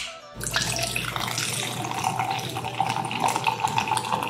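Energy drink poured from a can into a plastic tumbler: a steady splashing pour that starts about half a second in and runs on.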